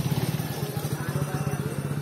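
Motorcycle engine idling close by, a steady low note pulsing evenly with each firing.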